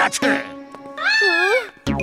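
A single drawn-out, meow-like whining cry that rises and then falls, over steady background music. A louder music beat comes in just before the end.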